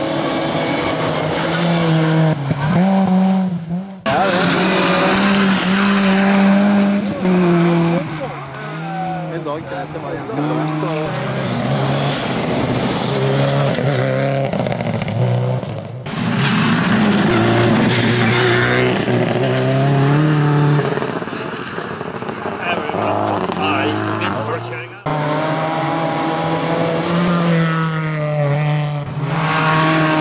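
Rally cars driven flat out on a gravel stage, one after another. Each engine revs high, drops and climbs again through quick gear changes, with gravel and tyre noise under it. The sound breaks off abruptly three times as one car's pass gives way to the next.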